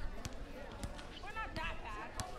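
Gym background: indistinct voices with several sharp knocks and clanks scattered through, the sound of weights and equipment in use.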